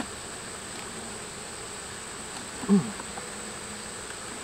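Honey bees humming steadily from an open hive, a continuous even buzz of the colony.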